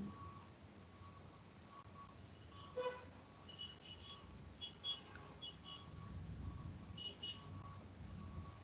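Faint background hiss with short, soft high-pitched beeps, often in pairs, over several seconds, and a single click about three seconds in.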